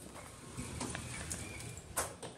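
Dover elevator car's machinery and doors running: a low rumble with a few faint clicks and a sharper click near the end.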